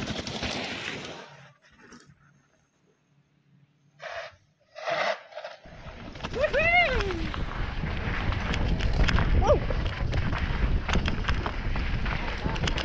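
A mountain bike rattles down a rough dirt downhill trail, heard from a camera on the bike or rider. Wind buffets the microphone in a loud, steady rush, and the bike gives off clicks and knocks over the bumps. A short falling call cuts through a little after halfway.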